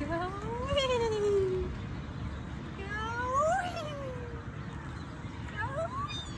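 Playground swing squeaking on its chain hangers as it swings back and forth: a long squeal that rises and then falls in pitch with each swing, about three seconds apart, with a shorter one starting near the end.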